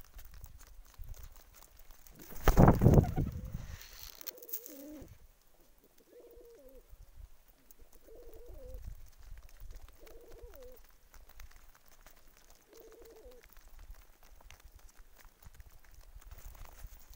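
Domestic pigeons cooing close by: five similar coos, each dropping in pitch, about every two seconds. A brief loud rush of noise comes about two and a half seconds in, before the first coo.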